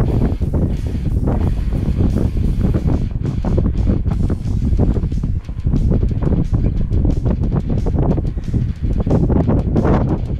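Wind buffeting the camera microphone: a loud, gusty rumble with a brief lull about halfway through.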